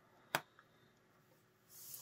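A single sharp click as an oscilloscope lead's ground end is pushed into a solderless breadboard. It is very quiet otherwise, with a short hiss near the end.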